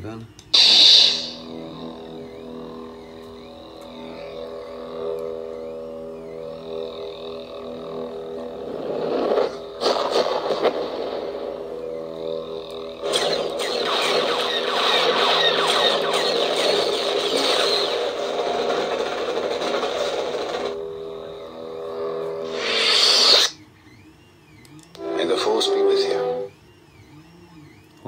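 Proffieboard lightsaber sound font: the ignition effect about half a second in, then a steady electric hum made of several stacked tones. From about 13 to 21 seconds a louder crackling effect plays while the blade cycles through colours, and the retraction sound follows near 23 seconds.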